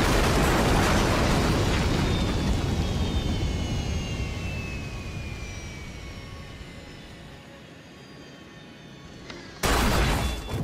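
Spacecraft crash-landing: a loud explosive impact of the hull and debris whose rumble slowly dies away over about seven seconds, under a faint falling whine. Near the end a second sudden heavy crash hits.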